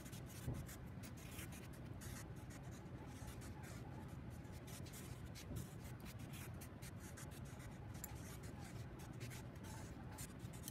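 Black Sharpie permanent marker drawing on brown kraft paper: faint, quick scratchy strokes of the felt tip across the paper.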